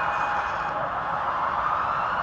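Police siren wailing over steady background noise, its pitch slowly rising from about halfway through.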